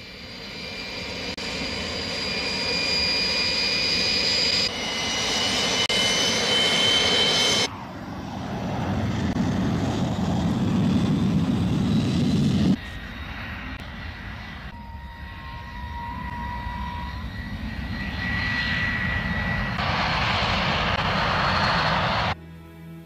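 Shenyang F-6 (MiG-19) jet fighters' twin turbojet engines: a high, steady turbine whine over a roar that swells as the jets run along the runway and take off. The sound changes abruptly several times as the shots cut from one jet pass to the next.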